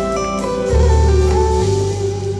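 Live gospel band playing an instrumental passage: a plucked guitar melody over sustained deep bass notes that shift about three-quarters of a second in and again near the end.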